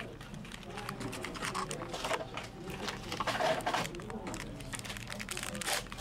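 Baseball cards being handled and shuffled, with the foil wrapper of a card pack crinkling in the hands in irregular rustles.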